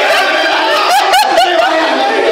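A small group of people laughing and snickering, with some talk mixed in; the laughter is strongest about a second in.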